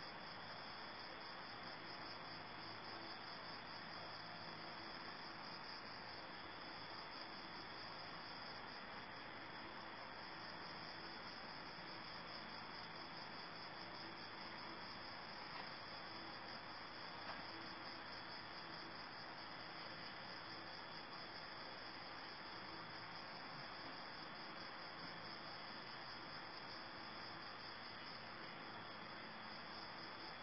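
Faint, steady chorus of crickets, a continuous high-pitched trill.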